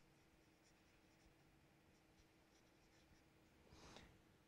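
Near silence, with a string of faint short scratches from a felt-tip marker writing a word on paper.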